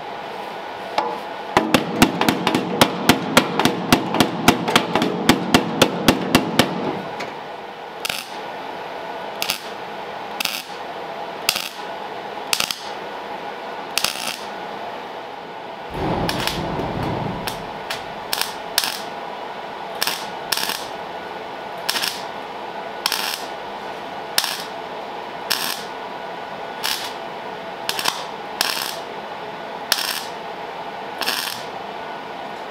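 Metalwork on a steel car firewall being plug-welded in: a run of rapid, loud sharp strokes for about five seconds, then single sharp metallic taps roughly once a second, with a brief low thud midway.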